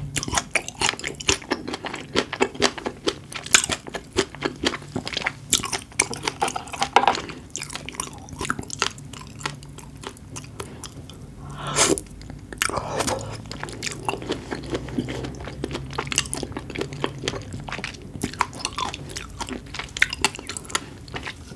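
Close-miked chewing of raw seafood, with many small crisp pops and clicks in the first half. Just before 12 s there is one louder bite as a sauce-dipped raw red shrimp goes into the mouth, followed by softer, wetter chewing.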